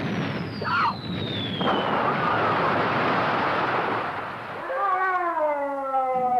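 Film sound effects of an explosion: a dense blast noise with a thin whistle falling in pitch over the first two seconds and a brief high cry about a second in. Near the end a sustained, slightly downward-sliding guitar note begins.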